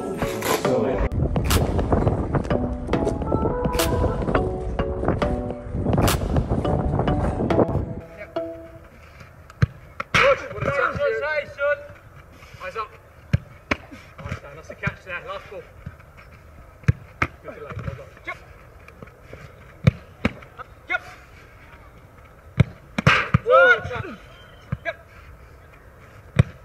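Music for about the first eight seconds. Then footballs are kicked and caught in goalkeeper training: sharp thuds at irregular intervals, with distant shouts between them.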